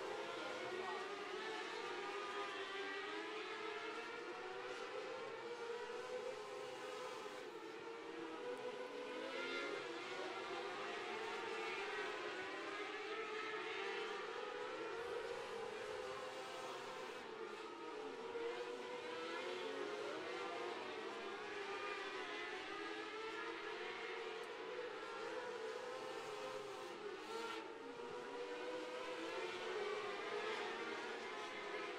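A field of 600cc micro sprint car engines racing together, a dense high-revving drone that keeps wavering up and down in pitch as the cars lap the dirt oval.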